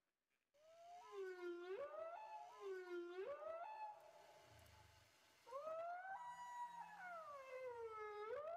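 Recorded whale song: long pitched calls that swoop down and back up, starting about half a second in, then a weaker stretch in the middle followed by one long call that rises, holds and falls again.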